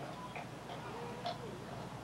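A lull in the conversation: steady tape hiss and room hum, with a faint, brief voice sound about halfway through.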